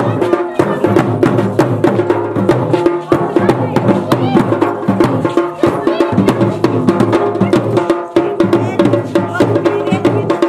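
Garhwali folk dance music: fast, dense drumming in the dhol-damau style with a melody over it, running continuously at a loud, even level.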